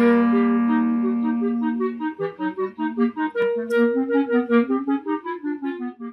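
Clarinet music in at least two parts. A long held low note sits under a stepping upper line, then about two seconds in it breaks into quick runs of short notes over a sustained higher note.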